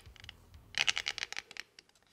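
A 3D-printed polycarbonate turbine housing and rotor being handled, making a quick run of light plastic clicks and rattles about a second in that thin out toward the end.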